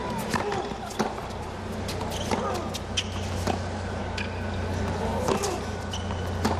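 Tennis ball struck back and forth by rackets in a rally, a sharp pop every second or so that begins with a serve, over a steady hum of a large stadium crowd.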